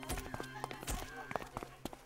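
Camera shutters clicking in quick, irregular succession, many clicks over a couple of seconds, over a soft music bed.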